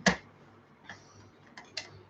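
A sharp click, then a few lighter clicks and taps about a second and a half later, as a small lidded container is handled on a kitchen bench.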